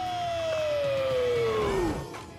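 Swing-jazz song music with one long held note sliding steadily down about an octave, dropping quickly just before it ends.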